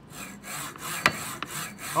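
Z-axis carriage of a Wanhao D8 resin printer slid back and forth by hand along its linear rails: a rubbing, sliding noise in repeated strokes, with a sharp click about a second in. The rails have just been realigned and their bolts retightened, and the axis is very smooth now.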